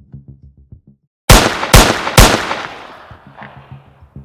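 Three loud gunshots, about half a second apart, each with a long echoing tail that dies away. They fall in a break between stretches of pulsing electronic music.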